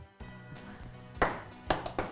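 Ping pong ball bouncing, two sharp taps about half a second apart, over quiet background music.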